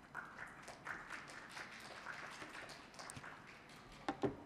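Faint applause, many quick hand claps overlapping, thinning toward the end.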